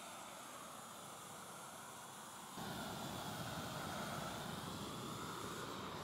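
Roofing torch burning steadily as it heats the back of an SBS modified-bitumen roll to melt the burn-off film and bond the sheet. About two and a half seconds in the burner sound gets louder and fuller in the low end.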